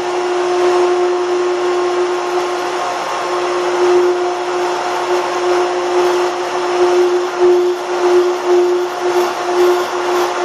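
Pool pump running with a steady hum, water and air churning through its strainer pot as it tries to prime. From about seven seconds in the sound starts to pulse unevenly.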